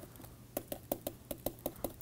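Faint, irregular clicks of a stylus pen tapping on a tablet screen while handwriting letters, about ten ticks in two seconds.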